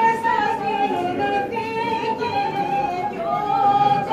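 Thracian Christmas carol (kalanta) being sung, a woman's solo voice leading an ornamented melody with long held notes.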